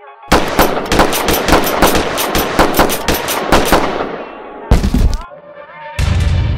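Rapid gunfire, about six shots a second for roughly three and a half seconds, then a single heavier bang about a second later.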